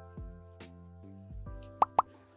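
Soft background music with held tones and a few plucked notes, then two quick pops close together near the end, a transition sound effect.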